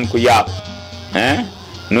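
A voice singing short repeated French phrases over a steady musical backing, holding one note about half a second in.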